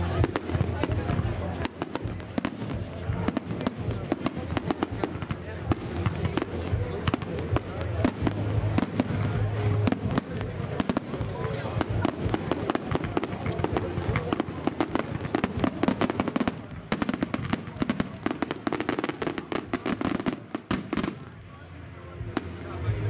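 Aerial fireworks display: a dense, continuous run of shell bursts and crackling, the bangs rapid and overlapping, easing off briefly near the end.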